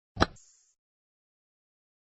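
A single short sound effect from an animated children's storybook as it moves on to its next page, with a brief hiss trailing off after it.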